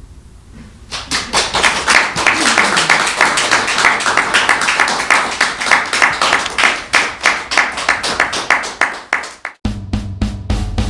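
Dense, irregular clapping, like applause, starting about a second in after a quiet moment. It cuts off abruptly shortly before the end, where music with a bass line and drum beat begins.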